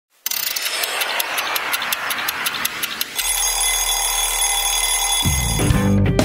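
Alarm clock ringing: about three seconds of rapid, evenly spaced strikes, then a steady ringing tone. Music comes in near the end.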